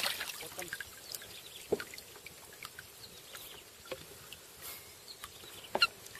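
Faint, scattered light knocks and clicks in a small boat as a freshly landed snakehead is handled, the sharpest about a second and a half in.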